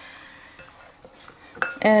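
Plastic rice paddle scooping sticky cooked rice in a glass bowl: faint, soft scraping and a light knock near the end.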